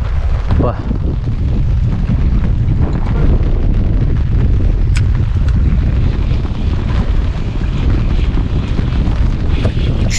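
Wind buffeting the microphone: a steady, loud low rumble with no pitched tone in it.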